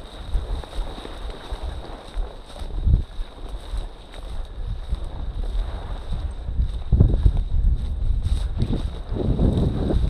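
Wind buffeting the camera microphone, with dry prairie grass rustling and swishing against the walker as he pushes through it on foot. The rumble is gusty and uneven, swelling about seven seconds in and again near the end.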